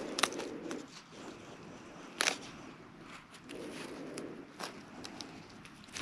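Quiet handling of a cardboard, craft-stick and duct-tape grabber on a table: soft rustling as the tape is pressed down, and a few light clicks and taps, the sharpest about two seconds in.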